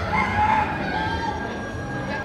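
Rooster crowing, one drawn-out call of about two seconds.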